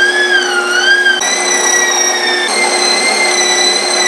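Electric meat grinder running, grinding pork into mince: a steady motor whine that starts abruptly, its pitch wavering briefly in the first second before settling.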